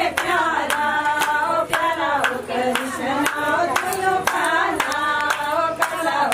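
A group singing a Himachali pahari Krishna bhajan in kirtan style, with steady rhythmic hand clapping of about three claps a second keeping time.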